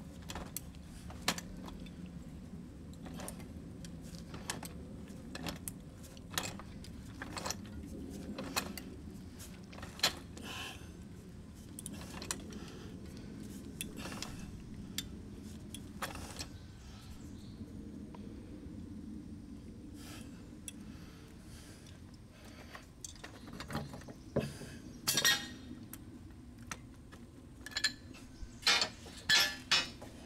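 Pipe wrench clicking and clinking against a threaded steel pipe fitting as the fitting is turned onto the pipe: irregular sharp metallic clicks, with a few louder clinks near the end.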